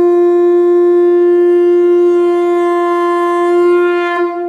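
A conch shell (shankha) blown in one long, steady, loud note that is held throughout and swells slightly near the end.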